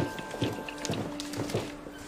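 Scattered footsteps of several people walking on a hard school-hallway floor and stairs, over a faint, held music note.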